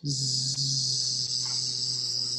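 A woman's voice making a long, steady buzzing "zzzz", the sleeping sound that ends the Z page of an alphabet book.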